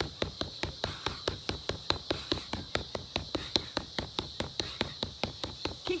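Rapid flurry of punches landing on a freestanding punching bag, a steady run of sharp smacks at about five a second.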